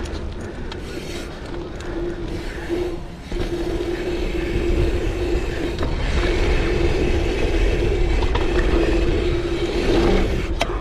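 Mountain bike riding over a packed-dirt jump line, with tyres rolling and the bike rattling. The rear freehub buzzes as a steady tone while coasting, breaking off briefly about three seconds in before running steadily again.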